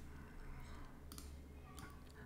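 Faint computer mouse clicks, one about a second in and another near the end, against quiet room tone.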